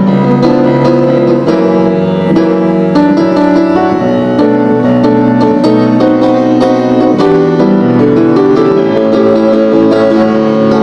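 Solo August Förster grand piano being played: a busy passage of many quick notes and chords over a moving bass line, at an even loudness.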